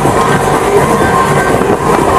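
Breakdance fairground ride running at speed, its spinning cars rumbling loudly past close by.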